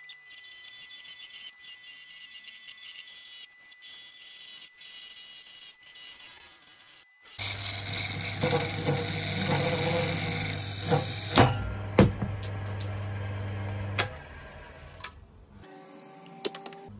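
Wood lathe running while a parting tool cuts into the centre of a spinning ziricote piece, quiet at first and then loud with a steady motor hum from about seven seconds in. About eleven seconds in, the tool catches and there are two sharp cracks as the piece blows apart. The lathe's hum stops about three seconds later.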